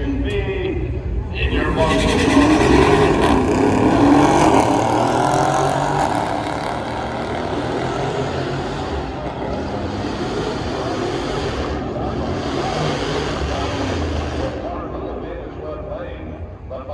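A Dodge Charger 392 Scat Pack's 6.4-litre Hemi V8 and a Mercedes E63 AMG launching together in a drag race. The engines swell about a second and a half in, rise in pitch under full throttle, and are loudest for the next few seconds, then ease off and fade as the cars run away down the quarter mile.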